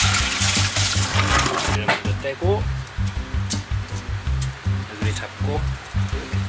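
Background music with a steady bass beat. Over it, for about the first two seconds, water is poured from a jug into a stainless-steel sink, splashing through a mesh colander to rinse crayfish.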